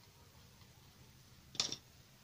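A small modelling tool set down on the work surface: one brief, sharp click-clatter about one and a half seconds in, against faint room tone.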